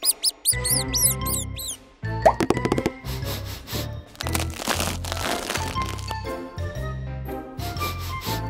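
Playful children's background music with a steady bass pattern, opening with a quick run of high, arching chirp sound effects and carrying a brief rush of noise around the middle.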